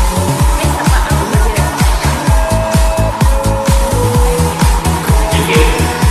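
Electronic dance music with a steady kick-drum beat and sustained synth notes.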